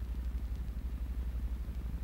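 Steady low hum with faint hiss from an old film soundtrack, with no other sound in the pause.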